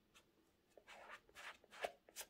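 Faint rustling and scuffing of cotton-gloved fingers rubbing over the heel and upper of a Nike Air Max Plus 3 sneaker. A few short scratchy strokes begin about a second in, and the sharpest comes near the end.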